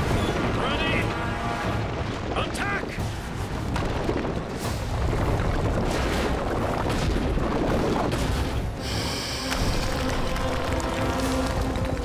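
Soundtrack mix of a giant drilling machine's heavy, continuous rumble and grinding, with booms and crashes, under dramatic music. A couple of short vocal cries come in the first few seconds.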